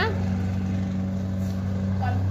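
A steady low mechanical hum with an even pitch and no change in level.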